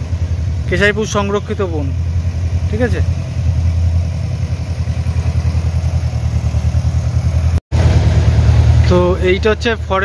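Tractor diesel engine running with a steady low chug, getting louder about eight seconds in as it comes closer.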